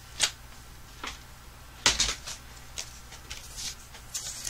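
Cardstock and small crafting tools being handled and set down on a desk: a handful of short rustles and light knocks, the loudest about two seconds in.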